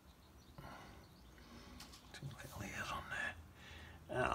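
A person murmuring quietly under the breath, with no clear words.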